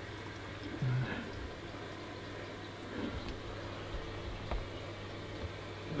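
Low steady hum with faint running water from a reef aquarium's circulation pumps and overflow.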